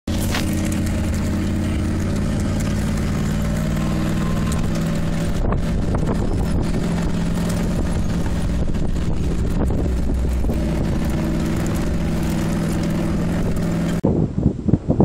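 Off-road vehicle's engine running steadily as it drives, at an even pitch and level, over road noise.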